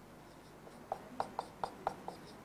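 Faint handwriting: about half a dozen short taps and scratches of a pen or marker, starting about a second in.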